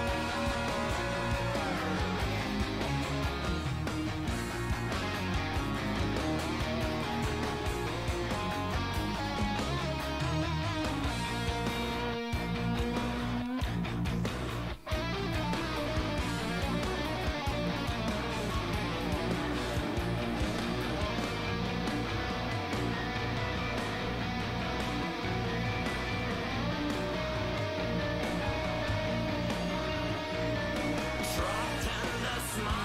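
Progressive rock song playing, led by electric guitar over bass and drums, with one momentary break in the sound about halfway through.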